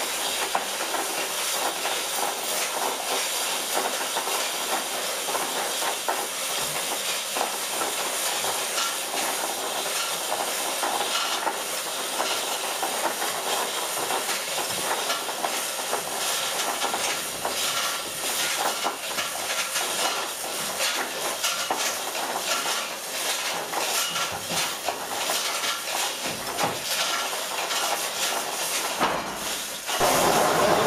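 Steady hissing, rattling machinery noise with scattered light clicks and knocks, from the mill's running wooden and iron drive gear.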